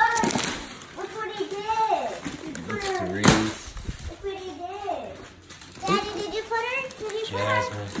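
Excited children's voices chattering and exclaiming, with one sharp sound about three seconds in.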